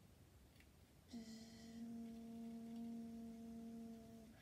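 A child's voice holding one steady hummed note for about three seconds, starting about a second in with a short breathy onset: a vocal sound effect for the strain of pedalling uphill.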